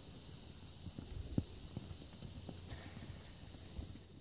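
Hoofbeats of a two-year-old horse under saddle on a sand arena: a run of low thuds, the loudest about a second and a half in.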